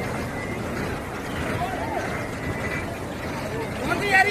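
Steady rush of floodwater flowing across a street, with faint distant voices.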